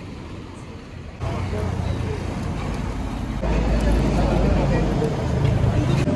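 Road traffic passing a roadside stall. The first second is quiet, then steady vehicle noise comes in suddenly. A heavy low rumble swells about midway and eases near the end, as a large vehicle goes by close.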